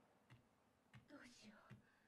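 Near silence, with faint, low speech about halfway through.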